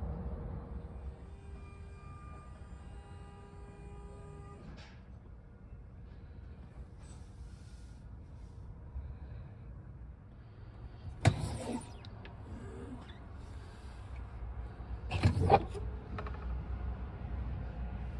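Inside a truck cab: a steady low rumble, and two loud, sharp plastic clacks about 11 and 15 seconds in as storage compartment lids are opened and handled. A few seconds in, a steady multi-tone whine sounds for about four seconds.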